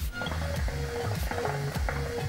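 Hookah water bubbling as smoke is drawn through the hose, under background music with a bass line.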